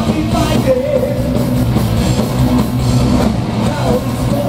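Heavy metal band playing live: distorted electric guitars and bass, loud and continuous, with a wavering melody line riding above the riff.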